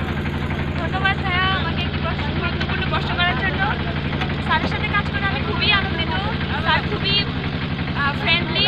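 Motorboat engine running steadily with a low, even hum while the boat is under way, with a woman talking over it.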